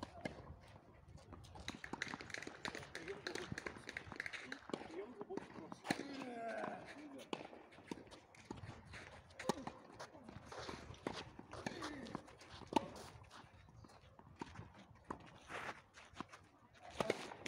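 Scattered sharp knocks and shuffling footsteps on a clay tennis court, with people talking at a distance.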